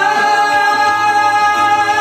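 A man singing through a handheld microphone over a karaoke backing track, holding one long steady note above a moving bass line.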